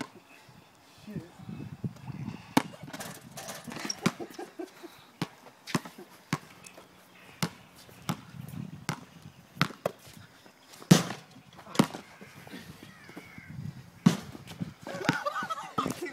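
Basketball bouncing on a concrete court: a run of sharp slaps at uneven intervals, with one louder hit about eleven seconds in.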